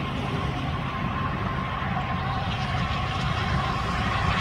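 Steady low rumble of distant road traffic, with a faint steady whine above it.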